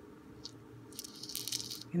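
Czech pressed glass beads rattling and clinking against each other and the clear plastic box they sit in as it is tilted, a quick jingle of many small ticks starting about a second in, after a single faint click.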